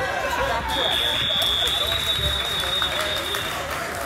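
A high, steady electronic beep, one unbroken tone lasting about three seconds and starting about a second in, over the chatter of voices in a gym.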